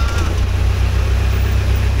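A car engine running at low speed, heard from inside the cabin as a steady low drone, with a wash of water noise as the car wades through floodwater.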